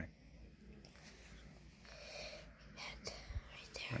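Faint whispering in a quiet room, with a soft click about three seconds in.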